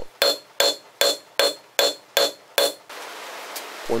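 Hand hammer striking hot steel on an anvil to draw out the bar: seven evenly spaced blows, about two and a half a second, each with a short metallic ring. The blows stop about three seconds in, and a steady hiss follows.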